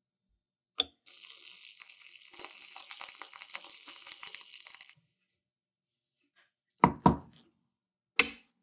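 Whipped cream dispenser spraying cream into a small plastic cup: a hissing, crackling spray lasting about four seconds, after a single click. Near the end, two loud knocks.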